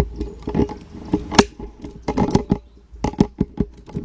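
A string of irregular light knocks and clicks, a dozen or so over a few seconds, the sharpest about one and a half seconds in, as of things being handled and set down.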